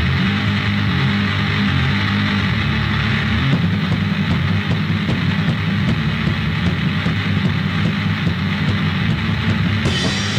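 Anarcho-punk band playing a stretch of a song from a 1992 cassette: distorted, dense and muffled, with little treble. The playing gets busier about three and a half seconds in, and it brightens just before the end.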